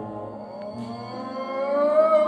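Male jazz singer holding one long wordless note that slides slowly upward and grows louder, with the big band sustaining chords underneath.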